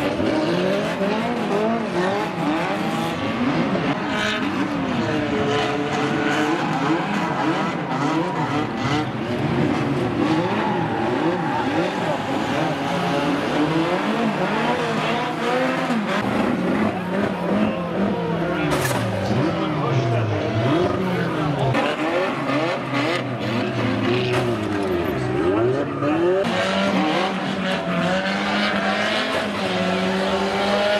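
Several banger racing cars' engines revving over one another, their pitch rising and falling continually as the cars race round the track.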